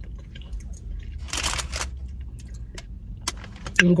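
Close-up mouth sounds of chewing a bite of cake pop: a few short wet clicks and smacks, with a breathy rush about a second in, over a low steady hum.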